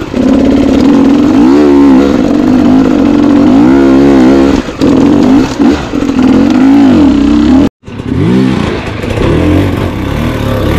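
Single-cylinder dirt bike engine under way on a rough trail, the throttle rolled on and off so the revs swell up and fall back several times. The sound cuts out for an instant about three-quarters of the way through, then picks up again.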